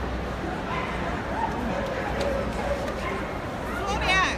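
A dog gives a short, high yelp near the end, over the steady murmur of chatter in a crowded show hall.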